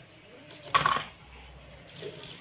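A short clatter of small plastic toys knocking against a plastic basket, once, about three-quarters of a second in, otherwise quiet.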